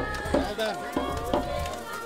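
A man's voice speaking over background music.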